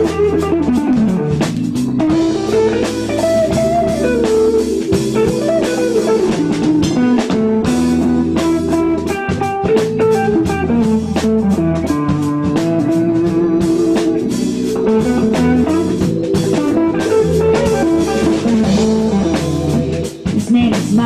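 Live blues-rock band playing an instrumental passage: an electric guitar leads with a melodic line that slides up and down in pitch, over drum kit and bass.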